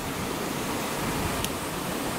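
Steady, even background hiss with no distinct events, and a faint small click about one and a half seconds in.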